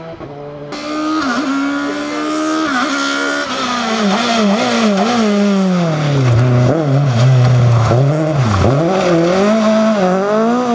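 A rally car's engine at high revs, getting louder as the car comes through the stage. The engine pitch jumps and dips sharply several times as the driver lifts off, brakes and shifts through the corner, then climbs again as it pulls away.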